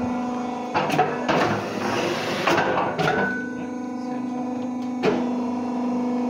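Rotary fly ash brick machine running: a steady motor hum with sharp metallic knocks and clanks at irregular moments, several in the first half and one about five seconds in.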